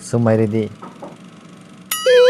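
Speech only: a man's voice says a short phrase, then after a pause of about a second a higher voice begins right at the end.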